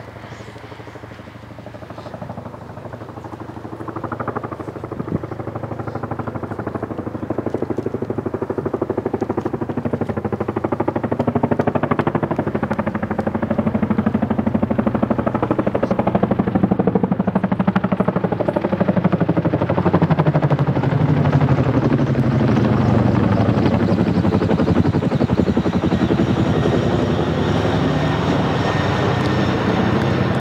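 Helicopter flyover: the rapid rotor thudding grows steadily louder as the helicopter approaches, then holds loud over the last third as it passes overhead, its pitch dropping about two-thirds of the way in.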